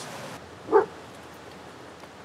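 A single short dog bark about three-quarters of a second in. Before it, the rushing of a river cuts off abruptly.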